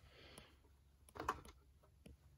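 Mostly quiet, with a faint brief rustle and a light click in the first half second, as hands take hold of the laptop's loosened plastic bottom cover.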